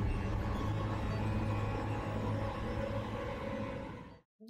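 Dark soundtrack music from a TV episode: a steady low drone under a dense wash of sound, cutting off abruptly at the end.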